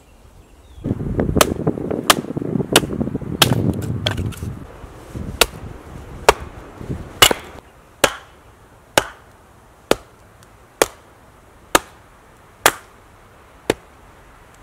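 Hatchet strikes splitting kindling on a wooden chopping block: sharp single knocks of steel into wood, about one a second. A low rumbling noise runs under the first few strikes and dies away after about four seconds.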